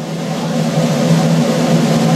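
Symphonic wind band playing a sustained low chord in the brass and low winds that swells in loudness.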